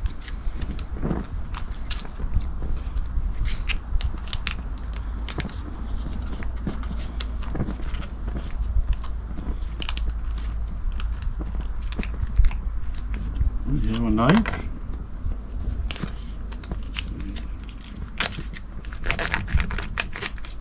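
Opening a can of Spam and handling the meat and packaging by hand: a run of small clicks, crinkles and scrapes, with the knife at work near the end, over a steady low rumble.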